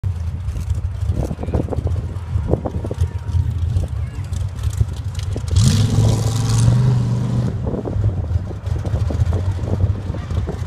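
Off-road vehicle engines running steadily, with one engine revving up and holding higher revs for about two seconds around halfway through.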